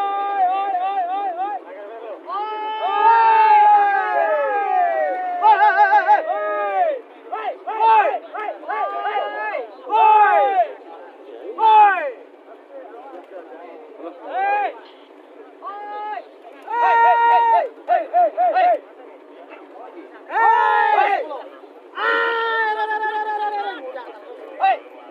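Several men shouting long, high-pitched, wavering calls, overlapping and coming in repeated bursts: handlers calling their racing pigeons in to the hens held up at the finish of a sprint race.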